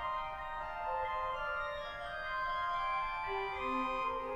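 Pipe organ playing, several held notes sounding together and overlapping as the lines move, with lower notes coming in near the end.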